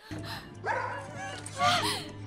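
Two short yelps that slide in pitch, like a small dog's, over background music; the second is louder.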